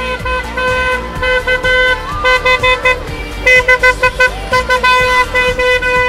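Car horn honking repeatedly: a string of short toots in the middle, then a long held honk near the end that cuts off suddenly.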